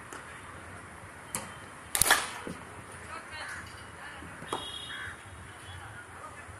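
Cricket bat striking a ball: a sharp double crack about two seconds in, the loudest sound, with fainter single knocks of bat on ball from the surrounding nets about a second in and past four seconds.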